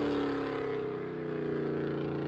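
Exhaust note of a 1980 Camaro's small-block 350 V8 crate engine with long-tube headers and X-pipe exhaust, heard from the roadside as the car drives away. The note slowly drops in pitch and fades, then holds steady in the second half.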